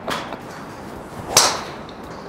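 TaylorMade Qi10 MAX driver striking a golf ball off a tee: one sharp crack of impact about one and a half seconds in, a well-struck drive.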